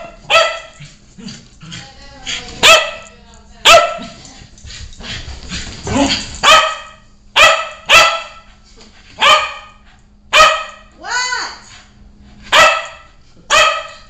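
American Eskimo dog barking repeatedly in excitement after a bath: about a dozen sharp, loud barks roughly a second apart, with one longer bark that rises and falls in pitch near the end.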